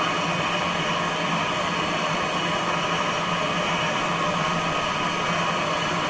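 Home-built mechanical television's rotor of four spinning LED strips, driven by a stepper motor, running at full speed: a steady whir with a few steady tones running through it.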